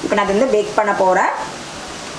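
A woman speaking briefly, then a steady hiss of background noise.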